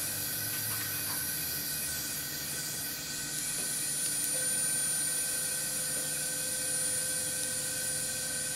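Steady suction hiss of a surgical smoke evacuator running beside the skin. A thin, steady high tone joins about three seconds in.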